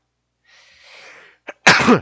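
A man sneezes once near the end: a faint breathy intake, then a single sharp, loud burst.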